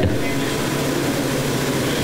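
Steady room noise in a pause between speakers: an even hiss with a faint low hum.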